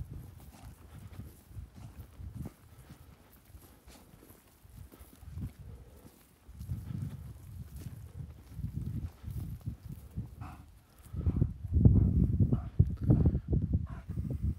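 Footsteps on dry, loose, freshly sown topsoil, irregular soft thuds and scuffs, heavier and louder in the last three seconds.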